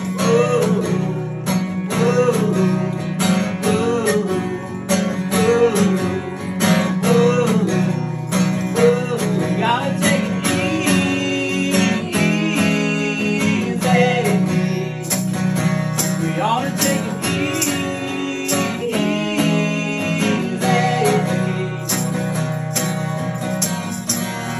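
Acoustic guitar strummed in a steady rhythm while a man and a woman sing a song together; the voices drop out near the end while the guitar carries on.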